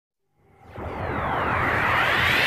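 An intro whoosh sound effect: silence, then about half a second in a whoosh swells up and holds, with tones sweeping down and up through it.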